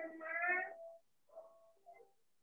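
One drawn-out pitched call about a second long, its pitch rising slightly and then easing off, followed by a few faint short calls.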